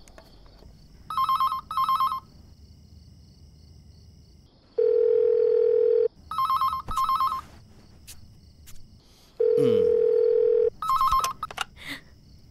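Telephone ringing in pairs of short, trilling electronic rings, three pairs in all. Between them come two long steady tones of just over a second each.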